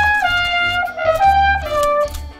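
Plastic toy trumpet being blown, playing a short tune of held, trumpet-like notes that step up and down in pitch, over a low bass accompaniment. The toy is working.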